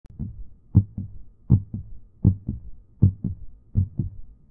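Heartbeat: a steady lub-dub, each beat a pair of low thumps, about 80 beats a minute, five beats in all.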